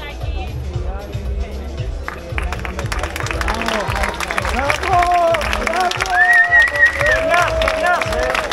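Background music with a steady bass beat over a crowd. From about two and a half seconds in, applause builds, and voices and cheering rise over the music.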